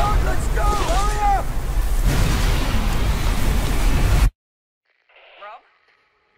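Film-trailer storm sound: a loud roaring rush of mountain wind with a deep rumble, a voice crying out over it in the first second and a half. It cuts off abruptly about four seconds in, followed by faint talk.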